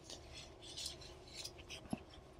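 Faint scraping and rubbing of a steel server sliding rail being handled and lined up against the rack posts, with one short click just before the end.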